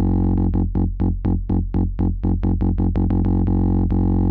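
Low, buzzy modular-synth drone through the Frap Tools CUNSA filter, its cutoff pinged open by a stream of gates so that the tone brightens and darkens in a fast pulse, about five or six times a second. It stays brighter while each gate is held high, as the CUNSA ping circuit follows the gate's duration.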